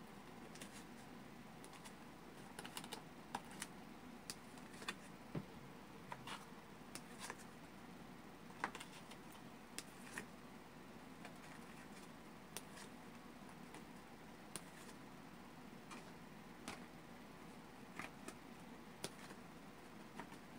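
Oracle cards being dealt from the deck and set down on a table, making faint, irregular light clicks and taps, a few seconds apart or less.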